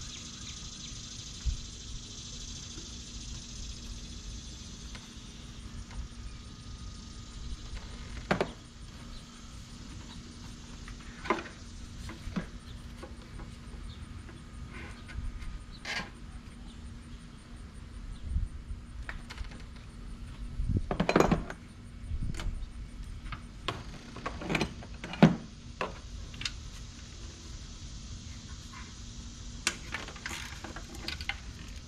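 Scattered metallic clicks, clinks and knocks of hand tools and loosened parts in a Toyota Sienna V6 engine bay, as bolts are taken out to remove the throttle body and intake manifold. A quick run of knocks about two-thirds of the way through is the loudest moment.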